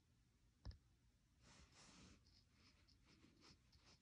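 Near silence, with one faint click less than a second in and then faint, light scratching strokes.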